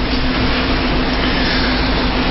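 A steady, loud rushing noise with a constant low hum beneath it.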